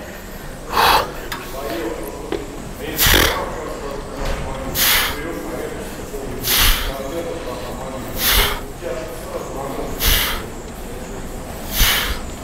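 A man's sharp, forceful breaths, one with each repetition of a behind-the-neck lat pulldown, in an even rhythm of about one every second and a half to two seconds, seven in all.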